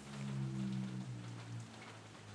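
Steady rain patter from a background rain-sound track, under a low sustained hum that fades out after about a second and a half.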